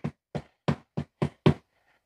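Spatula knocking and scraping against a skillet as ground turkey is pushed across the pan: six short strokes, about three a second, that stop a little after one and a half seconds.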